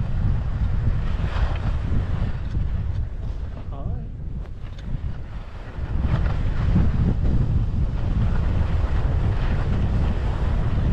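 Wind buffeting a camera microphone on an open ski slope, a low rumbling rush that grows louder and steadier about six seconds in as the camera skier starts moving down the run.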